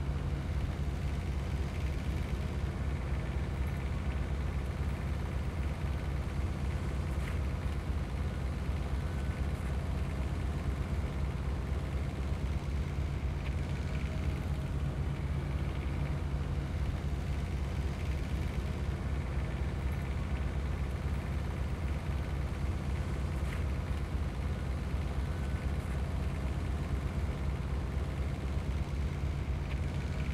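Diesel engine of a SealMaster Crack Pro oil-jacketed mastic melter running steadily, a constant low drone that does not change.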